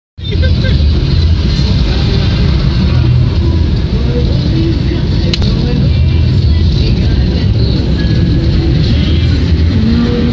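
Steady low rumble of a car driving at motorway speed, heard from inside the cabin: tyre and engine noise. A single sharp click about five seconds in.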